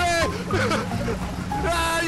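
People's voices shouting and laughing, loudest near the start and the end, over steady background music.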